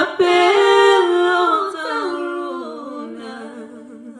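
A woman singing a Sesotho hymn unaccompanied, holding long notes that step down in pitch and grow softer toward the end.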